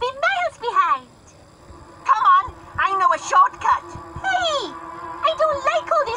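Voices with strongly sliding, high pitch that the recogniser could not make out as words, over background music with steady held notes. There is a brief lull about a second in.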